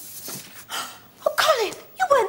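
A person's breathy non-verbal vocal sounds: two sharp, noisy breaths, then a short voiced sound that falls steeply in pitch about a second and a quarter in.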